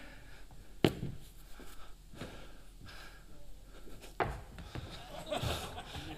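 A tennis ball landing with a short, sharp thud twice, about a second in and again about four seconds in, over quiet room noise in a large hall.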